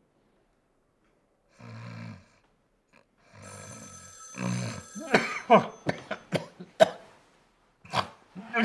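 A man snoring: a few rough snores at first, then a run of louder, sharp snorts from about five seconds in. A high steady ringing, the bedside telephone, joins in from about three and a half seconds.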